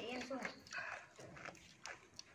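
A brief vocal sound at the start, a fainter one about a second in, and a few light clicks and taps of chopsticks and dishes at a shared meal.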